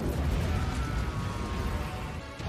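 Film action soundtrack: a sudden loud blast whose heavy low rumble carries on, over orchestral music.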